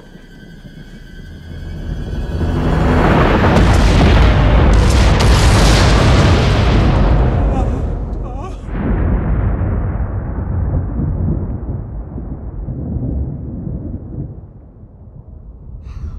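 Film sound effect of the Yellowstone supervolcano erupting: a deep rumbling blast that swells over a couple of seconds and stays loud for several seconds. It breaks off abruptly about eight and a half seconds in, then carries on as a lower rumble that slowly fades.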